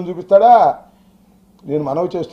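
A man speaking Telugu into podium microphones, a short phrase, a pause of about a second with a faint steady hum, then speech again.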